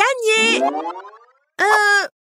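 Cartoon boing sound effect: a springy tone rising in pitch, fading away over about a second. It falls between short vocal exclamations.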